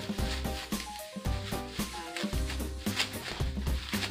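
Background music with a steady beat, over the crinkling of a thin plastic produce bag being handled as bananas are pulled out of it.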